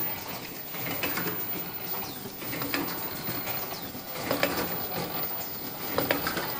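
Fully automatic disposable flat ear-loop face mask production line running on test, its machinery giving a steady mechanical clatter with irregular sharp clicks.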